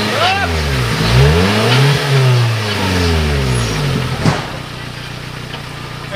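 Suzuki Jimny's engine revving hard and easing off in long surges as it churns through deep mud: one surge peaks at the start, another about two seconds in and falls away slowly. A sharp knock comes a little after four seconds, then the engine runs lower and steadier.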